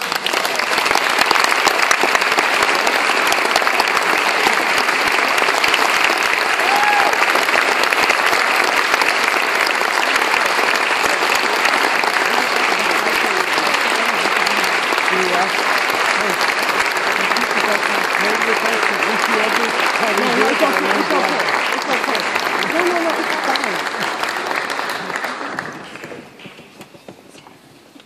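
Concert hall audience applauding, breaking out at once and holding steady, then dying away near the end, with a few voices audible in the crowd.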